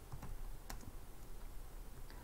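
Faint computer keyboard typing: a few scattered keystrokes, with one sharper click about a third of the way in, over a low steady hum.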